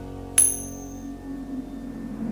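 A single bright metallic ping, a coin-flip sound effect, about half a second in that rings out briefly, over the last of the fading background music.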